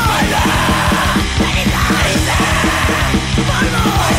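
Hardcore punk song playing at full band: distorted guitars, bass and fast, even drumming, with shouted vocals.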